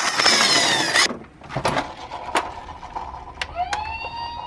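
About a second of noisy rushing, then scattered plastic knocks and clicks of toys being handled. Near the end a toy ambulance's electronic siren switches on, rising in pitch and then holding a steady tone.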